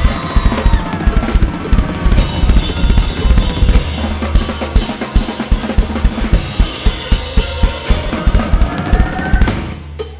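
DW Collectors drum kit with a 22-inch kick, brass snare and Zildjian cymbals played hard and fast: a dense run of kick, snare and cymbal hits over backing music with a sustained bass. The playing drops away in the last half second.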